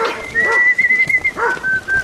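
A flock of sheep bleating, with a long high steady whistle held over them that drops to a lower note about one and a half seconds in.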